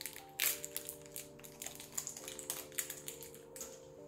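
Foil wrapper of a small individually wrapped chocolate being picked open by hand, giving faint, irregular crinkles and clicks, over soft sustained background music.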